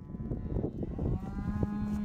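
A cow mooing: one long low call that swells and holds its pitch, over a low rumble.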